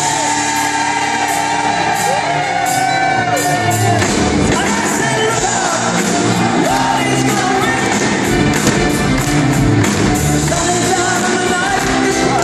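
Live rock band music in a large hall: drums keeping a steady beat under guitar, with a long held note near the start and singing. Shouts and whoops rise from the audience.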